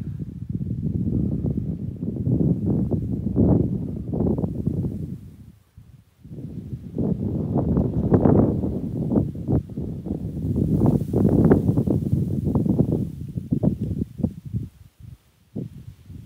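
Wind buffeting the microphone in gusts: a loud, uneven low rumble that drops away briefly about six seconds in and again near the end.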